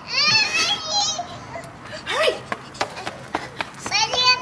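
A small child's high-pitched squeals and excited vocalising, the pitch bending up and down, with a few light taps in the second half.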